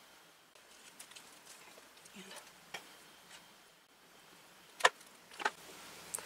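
Faint tabletop handling sounds of paper-craft work with tweezers and a squeeze bottle: scattered light taps and rustles, then two sharp clicks near the end.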